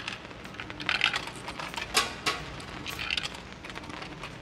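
Light, irregular clicks and taps of someone moving about a room: soft footsteps and small handling noises, with a couple of sharper taps about a second and two seconds in.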